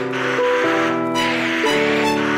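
Background music: held chords that shift to new pitches every second or so, over a steady hissy wash.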